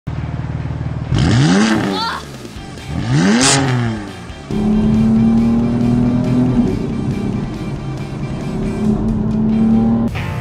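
Tuned BMW M4's twin-turbo straight-six, with a JB4 stage-3 map, idling and then revved twice through its exhaust, the pitch rising and falling each time. From about halfway in it holds a steady drone at constant revs.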